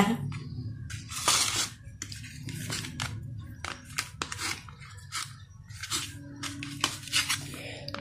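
A metal knife cutting cooked gram-flour (besan) pancake into pieces on a plate: irregular light clicks and taps of the blade on the plate, with a longer scrape a little over a second in.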